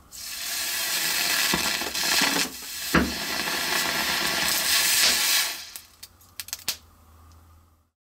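A small bead of sodium metal reacting violently with water dripped onto it, hissing loudly for about five seconds as it burns, with a few sharp pops, the loudest about three seconds in. A few small crackles follow as it dies down.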